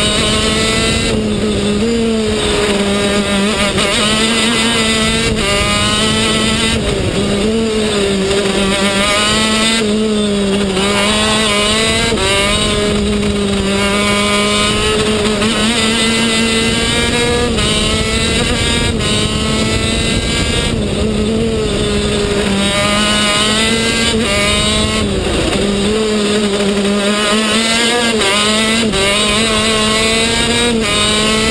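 TM K8 125 cc two-stroke shifter kart engine at racing speed, heard from onboard the kart: its pitch rises again and again as it pulls through the gears, with brief dips at the shifts and when lifting for corners.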